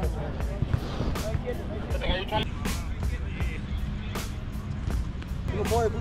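Rumbling handling noise and frequent knocks from a camera carried on the move, with shouting voices and music underneath; the shouting grows louder near the end.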